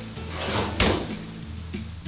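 Oven door being swung shut: a brief rising swoosh ending in a single clunk a little under a second in, over background music.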